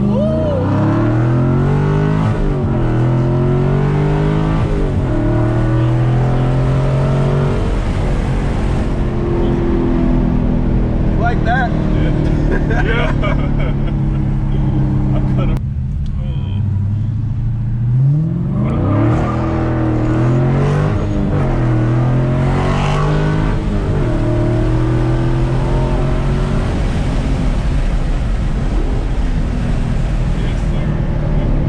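Dodge Challenger Scat Pack 392's 6.4-litre HEMI V8, its resonators cut out, heard from inside the cabin as it pulls hard through the gears of its six-speed manual. The pitch climbs and drops back at each upshift several times in the first eight seconds. About halfway it comes off the throttle briefly, then pulls again and settles to a steady cruise.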